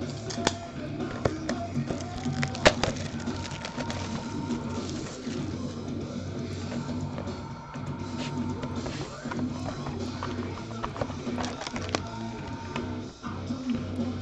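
Background music playing under the break, with a few sharp clicks and rustles of handling as a box of football cards is opened. The loudest click comes about three seconds in.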